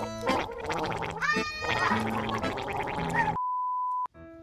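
A gurgling, rattling vocal noise over light background music. About three and a half seconds in, it gives way to a steady beep tone that cuts off sharply, the test-card bleep of a colour-bar and static transition.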